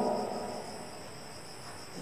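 Faint background with no speech: a steady high-pitched drone of several thin tones over a light hiss, with no tool clicks or knocks.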